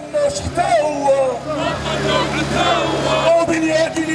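A chant leader shouting slogans into a handheld microphone over a loudspeaker, with a marching crowd chanting along. A steady low hum runs underneath.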